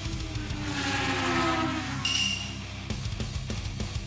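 Editing sound effects over background rock music: a falling-pitch glide over the first two seconds, then a short bright ding about two seconds in, after which the music's steady beat carries on.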